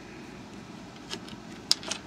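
Three short, sharp clicks of alligator-clip test leads being unclipped from the circuit board and dropped onto the wooden bench, the second the loudest, over a steady faint background hum.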